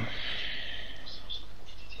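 Steady low electrical hum and faint background hiss of the recording, with a soft hiss lasting about a second at the start.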